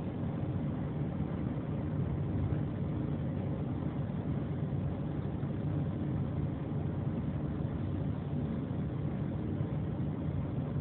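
Steady engine and road noise inside the cabin of a moving car, an even low rumble.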